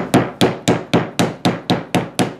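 Dead blow hammer striking glued leather holster pieces on an old anvil in a steady run of about four blows a second, setting the glue so the layers will not shift under the stitcher.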